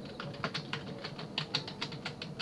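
Computer keyboard being typed on: a rapid, uneven run of key clicks, about seven a second, as a word is typed.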